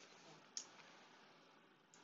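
Near silence with faint room hiss, broken by a single computer mouse click about half a second in and a fainter click near the end.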